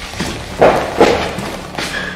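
Two loud bangs, like heavy knocks on a wall or door, about half a second apart, roughly a second in.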